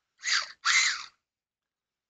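Two short breathy sounds from a person, one after the other in the first second, with no voice in them.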